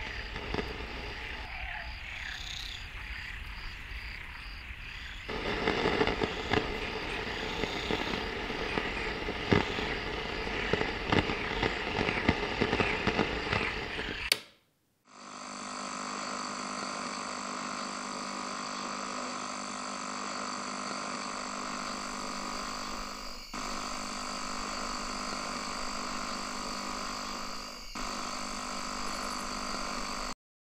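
Night-time nature ambience with frogs croaking, growing denser about five seconds in, then cutting out abruptly. After a second of silence, a steady, unchanging chorus of night insects such as crickets takes over, dipping briefly twice.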